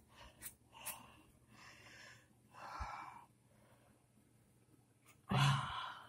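A person breathing out heavily several times, soft breaths in the first few seconds, then a louder sigh about five seconds in. A faint knock or two of handling comes in between.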